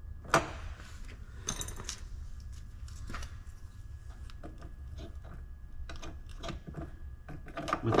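Light metallic clicks, taps and scrapes as a hinge bolt is worked into the truck's door hinge mount by hand, with a sharper click about a third of a second in and a brief ring about a second and a half in, over a steady low hum.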